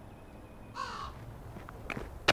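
A single crow caw about a second in, over faint outdoor background hiss, with a short click near the end.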